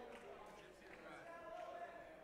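Faint, indistinct voices talking.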